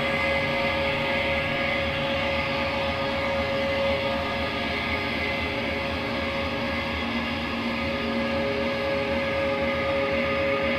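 A live noise-rock band's distorted electric guitar and bass amplifiers droning, with held feedback tones and no clear drumbeat.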